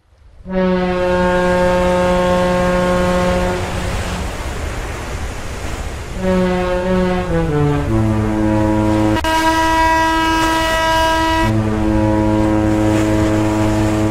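Large ship's horn sounding long blasts: a first held blast of about three seconds, then a run of notes stepping down in pitch, then long deep blasts broken by a higher-pitched one, all over a steady hiss.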